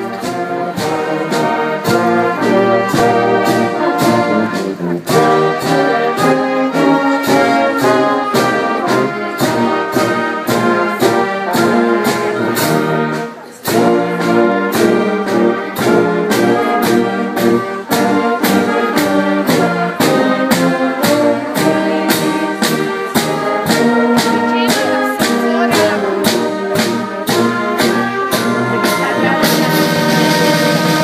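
Brass band music: trumpets and trombones playing over a steady drum beat, with a brief break about thirteen seconds in.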